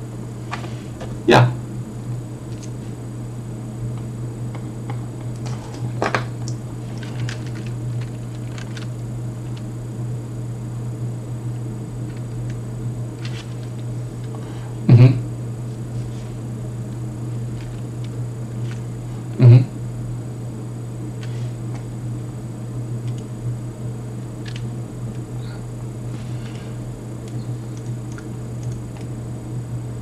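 A steady low hum on the call's audio, broken by three short, loud blips: one about a second in, then two more about 15 and 19 seconds in.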